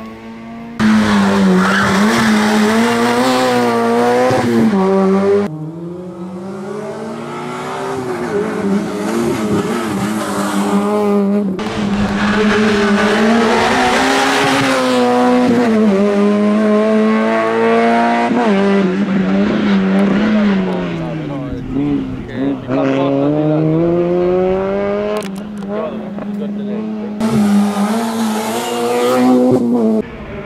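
Peugeot 106 competition car's engine revving hard and dropping back repeatedly as it is driven flat out through gear changes and tight turns, with tyres squealing at times. The sound breaks off abruptly several times and picks up again at a different pitch.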